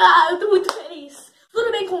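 A boy speaking to camera, with one sharp hand clap under a second in and a short pause before he goes on.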